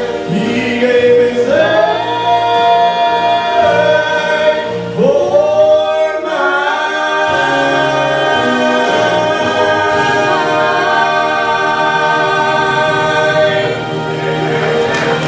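Mixed vocal group singing a gospel song in close harmony through microphones, with men's and women's voices together. Several sung phrases give way, about halfway through, to long held notes that stop near the end as the song closes.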